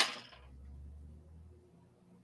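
A sharp clack as a tool is set down on the fly-tying bench, followed by a low rumble lasting about a second and a half.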